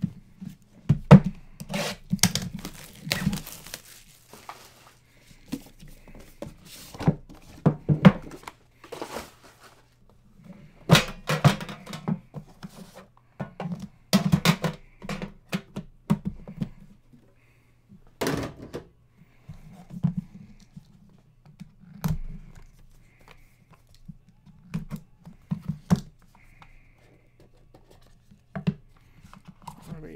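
Panini Immaculate trading-card boxes being handled and opened on a table: irregular bumps, knocks and scraping of the boxes, in clusters every second or two. A steady low hum runs underneath.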